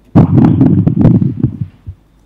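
Loud, distorted burst of crackling noise lasting about a second and a half, full of clicks, from a remote participant's audio feed, with a short blip just after it.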